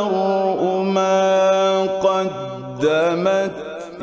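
A man reciting the Qur'an in the melodic tilawah style, holding long ornamented notes. About halfway through his voice drops low, then climbs back up near the end.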